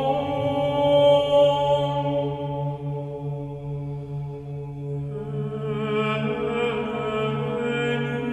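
Orthodox church chant: voices sing a slow melody over a steady, held drone note. The singing grows brighter and fuller about five seconds in.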